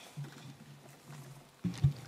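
Quiet room tone in a large debating chamber in a pause between speakers, with a faint low steady hum; a man starts speaking near the end.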